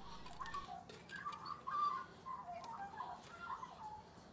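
Faint, scattered short bird chirps, with a few light clicks as small steel wire rings are slid along a bamboo skewer.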